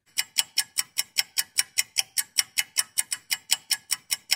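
Rapid clock ticking, about five even ticks a second, a waiting-timer sound effect.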